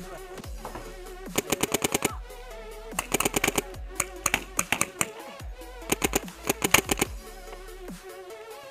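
Paintball marker firing in four rapid strings of shots, about ten a second, over background electronic music.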